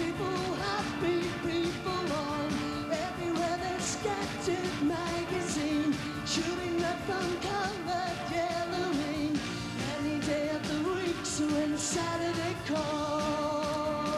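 Live metal band playing: a male singer's vocals over electric guitars, bass and drums, with a steady beat.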